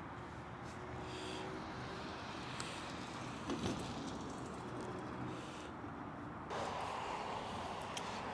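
Steady hiss of road traffic from passing cars, growing louder a little after six seconds in, with a short louder sound about three and a half seconds in.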